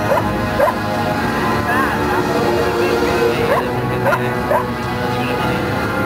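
Music playing with party voices, and over them a run of short, high yelping cries, about one or two a second.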